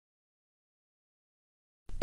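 Digital silence, with a narrating voice starting right at the end.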